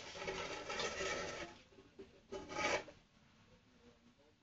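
Rasping scrape of something rubbed around inside a metal bowl on the floor: a long stretch of scraping, then a shorter one a second later.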